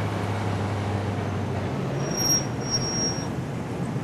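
Car on a city street with steady traffic noise: a low engine hum that fades out after about a second and a half, and a thin high tone sounding twice past the middle.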